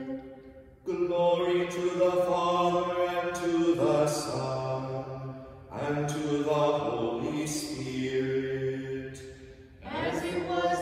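Chanted psalmody of Vespers: a low voice singing plainchant in long sustained phrases. The singing resumes about a second in, pauses briefly near the middle and trails off again near the end.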